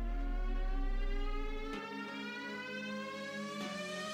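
Background music: a sustained synth tone slowly rising in pitch over held low notes that change about halfway through and again near the end.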